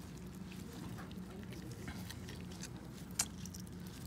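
Faint handling sounds of gloved hands and dissecting instruments working in a preserved specimen: scattered soft ticks and one sharp click about three seconds in, over a steady low hum.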